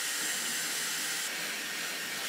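Dyson Airwrap blowing hot air through its pre-styling dryer attachment: a steady rush of air with a faint high motor whine that drops away a little after halfway.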